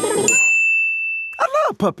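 A single high, bell-like ding chime struck about a quarter second in, ringing on one steady pitch for about a second before cutting off. A voice then starts saying 'Puppets'.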